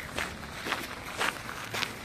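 Footsteps on a gravel path, a steady walking pace of about two steps a second.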